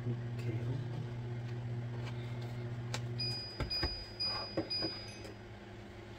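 Plastic meat tray and sauce cups being handled, giving scattered clicks and knocks in the second half. Under it a steady low electrical hum stops about three seconds in.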